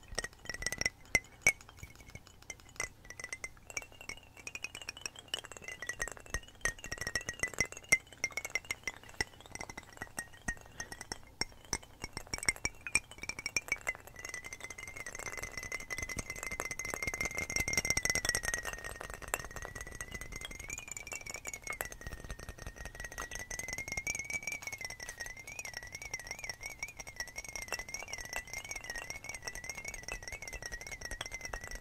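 Fingernails tapping and clinking on glass bottles, with several tracks of irregular tapping layered at once. Under it runs a sustained high tone that wavers in pitch.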